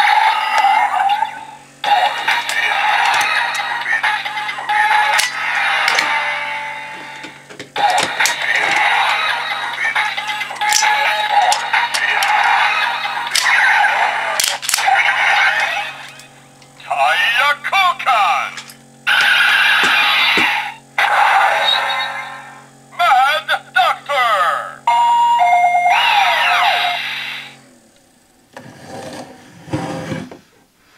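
Electronic Kamen Rider Drive toy belt (the DX Drive Driver) playing its sounds through its small built-in speaker: a steady low standby drone under synth music, sound effects and recorded voice announcements, coming in bursts with short gaps. The drone and music cut off near the end.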